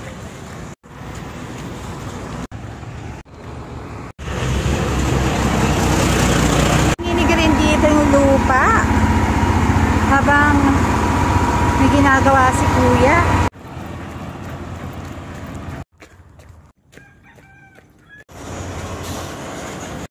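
A diesel road roller running close by on a fresh gravel road, a loud low rumble that comes in about four seconds in and cuts off suddenly about nine seconds later. Quieter road and traffic noise around it.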